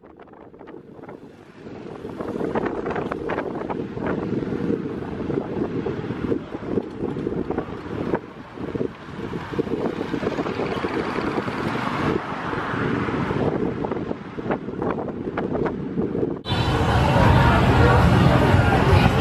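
Wind rushing over the microphone, mixed with road and engine noise, while riding through city traffic in a small open vehicle. The noise builds over the first couple of seconds, then stops suddenly near the end, giving way to street chatter.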